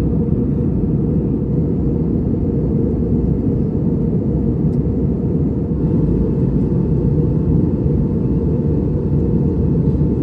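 Airbus A320 cabin noise in cruise or descent, heard from a window seat by the wing: a steady, even rumble of engine and airflow. A faint steady tone joins it about six seconds in.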